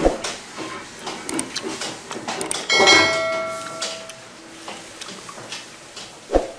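Clatter of knocks and clicks. About three seconds in, a metal object is struck and rings for about a second.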